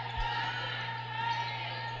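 A basketball being dribbled on the gym floor, faint under a steady low hum in the arena sound.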